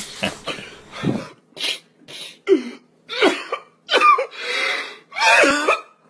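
A man sobbing in a string of short, gasping vocal bursts, some breaking into wavering wails.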